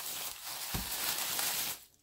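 Tissue paper rustling and crinkling as it is unfolded by hand from around a small wrapped package. The sound stops abruptly just before the end.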